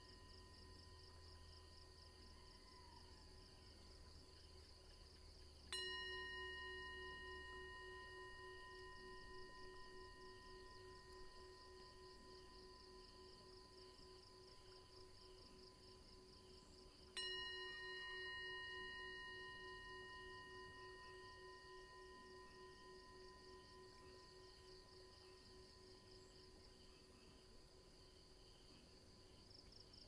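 A meditation bell struck twice, about eleven seconds apart. Each stroke rings a clear note of several tones that fades slowly. It is the signal calling meditators back to mindful awareness at the close of meditation.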